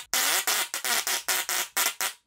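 Musical Tesla coil (Tesla Coil 10 Max) playing a tune through its spark discharge from a phone over Bluetooth: a quick run of harsh, buzzing notes, about five a second.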